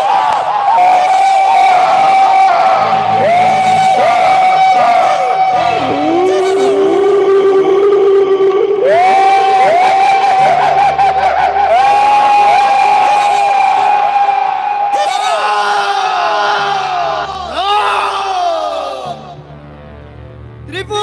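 Several voices giving long, drawn-out stage shouts that rise and fall in pitch and overlap one another, over music with a low bass; the sound fades near the end.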